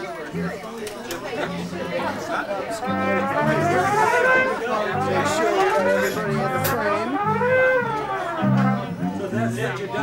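A trombone warming up, playing several slow slide glissandos that sweep up and down, over scattered low bass notes.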